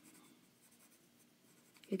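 Pencil scratching faintly on paper as a small shape is sketched.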